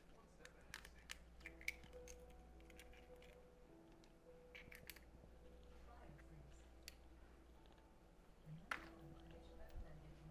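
Near silence: a few faint small clicks and taps from handling in the kitchen, one slightly louder near the end, over faint background music.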